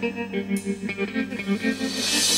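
Instrumental passage of a rock song: plucked electric guitar notes over a steady held low note, with no singing, swelling slightly near the end.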